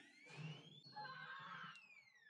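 Faint cartoon whistle sound effect of something thrown through the air: a pitch slides up, then one long whistle falls away, with a few shorter falling whistles near the end.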